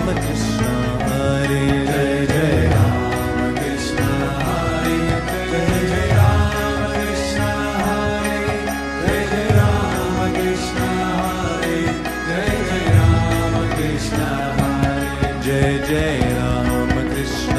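Devotional kirtan music: chanting over held instrumental tones, with a low drum stroke every couple of seconds.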